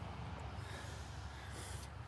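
Faint, steady breathing of a man catching his breath after physical exertion.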